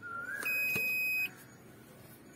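Aquameter CRM 50 groundwater survey meter giving one steady, high-pitched electronic beep a little under a second long, starting about half a second in.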